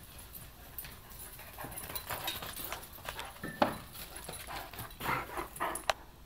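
A Great Dane galloping across a yard, its paws thudding unevenly, with one louder thump about three and a half seconds in, then panting close by near the end.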